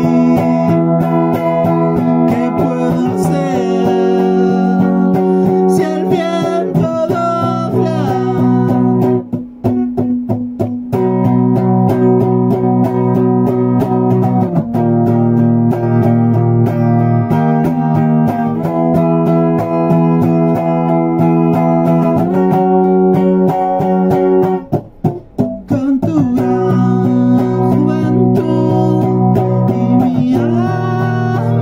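Guitar strumming chords that change every few seconds, with short breaks about ten seconds and twenty-five seconds in.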